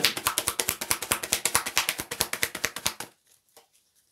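Tarot cards being shuffled by hand, a fast run of crisp card-on-card clicks at about a dozen a second that stops about three seconds in.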